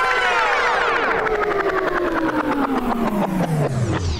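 Sound effect of the treatment machine: a loud buzzy tone with many overtones, sliding steadily and ever faster down in pitch like a motor powering down, the sign that the machine is failing.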